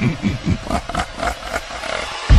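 Electronically deepened voice effect from a DJ's intro drop: a quick run of short falling syllables, about seven a second, that thins out and fades in the second half.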